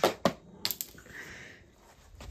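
Two sharp knocks right at the start, then a couple of lighter clicks and a faint hiss: handling noise from pieces being moved on a cardboard base under a glass marble.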